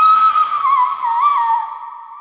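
A single high whistle-like note, held steady with two quick wavers in pitch, then dipping slightly and fading out with a long echoing tail.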